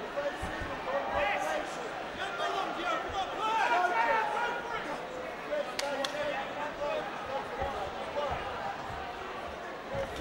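Voices shouting across a large arena hall, with a few dull thuds scattered through it.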